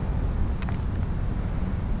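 Steady low rumble of outdoor background noise on a binaural microphone, with one short click a little over half a second in.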